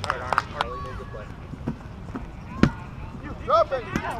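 A rubber kickball kicked once, a sharp thump about two-thirds of the way in, among the scattered shouts of players.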